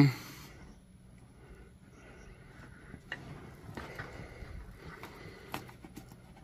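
Quiet handling sounds as two-stroke oil is poured from a plastic jug into a plastic bucket of needle bearings, with a faint rustle and a few light clicks about three seconds in and again near the end.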